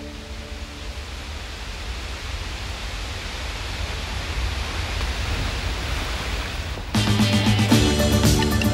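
Steady rushing noise of a large waterfall, Niagara's Horseshoe Falls, slowly growing louder as the preceding music fades out. About seven seconds in, band music with guitar starts suddenly and louder.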